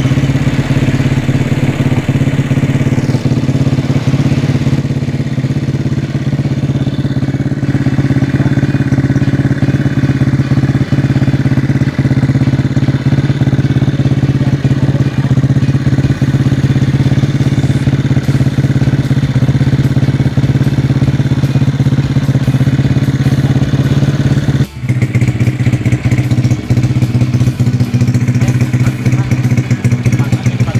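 Rebuilt Honda Astrea single-cylinder four-stroke motorcycle engine idling steadily while being run in, one brief drop-out near the end. Its note is still somewhat rough, which the builder says could come from the old crankshaft bearings, a worn clutch rubber and valve clearance deliberately set loose for the new engine.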